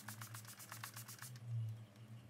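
Makeup finishing spray pumped rapidly at the face: a quick run of short hissing spritzes that stops after about a second and a half.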